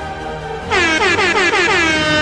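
Air horn sound effect over background music: about a third of the way in it comes in loud as a rapid string of about five short blasts, each dropping in pitch, then holds as one long steady blast.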